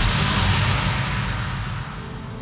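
Title-card sound effect: a loud whoosh with a deep bass rumble under it, slowly fading away.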